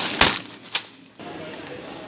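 A packet of cereal flakes tossed and caught: a sharp thump, then a shorter click about half a second later.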